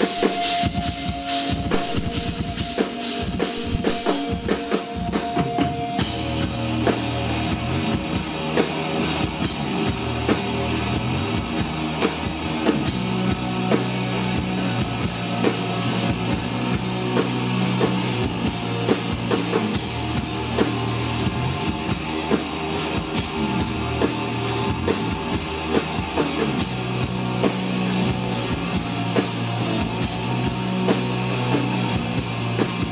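Live rock band playing an instrumental passage: electric guitar over a steady drum beat, the sound growing fuller in the low end about six seconds in.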